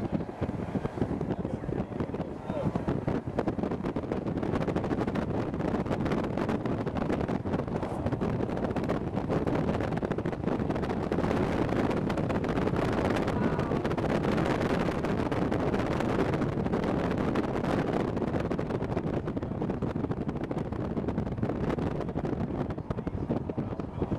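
Steady road and wind noise from a moving car, with wind buffeting the microphone.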